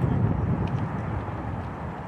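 Steady low rumble of road traffic, with no distinct engine or horn standing out.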